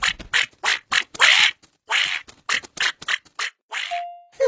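Cartoon duckling quacking: a rapid run of short, rasping quacks, three or four a second, with one drawn-out quack just past a second in.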